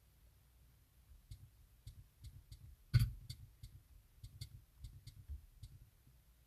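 Fingertip taps on a car head unit's touchscreen while typing, about a dozen light, irregular clicks, the loudest about three seconds in.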